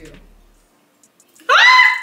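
A woman's short, loud, high-pitched shriek about one and a half seconds in. It rises sharply and then holds for about half a second, as the lid of a dry shampoo powder container pops off and half the powder spills.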